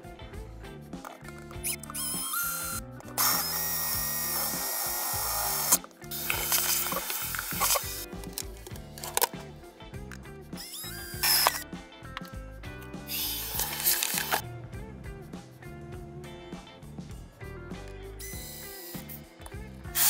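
Cordless power drill boring through a thin wall panel in several separate runs, the longest about three seconds, heard over background music.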